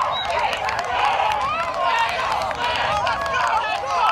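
Several men's voices on a football field calling and talking over one another with no single clear speaker, with scattered short clicks.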